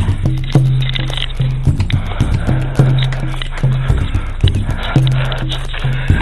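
Background music with a steady beat and a bass note repeating about once a second.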